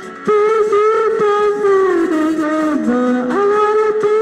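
Two amateur singers holding long notes on a Singing Machine Classic karaoke machine, loud. The pitch steps down about three seconds in and comes back up near the end.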